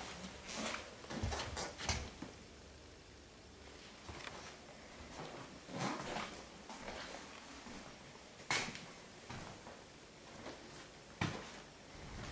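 Irregular soft knocks, clicks and rustles of someone moving about with a handheld camera in a small room, with two sharper clicks in the second half.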